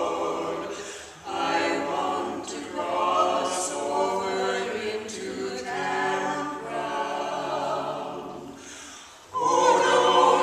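Mixed vocal quartet of two women and two men singing a cappella in parts. A short break between phrases comes about a second in, and a louder phrase begins near the end.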